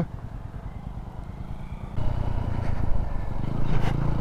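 Motorcycle engine running at low speed with a steady low pulsing rumble, louder from about halfway through as the bike picks up.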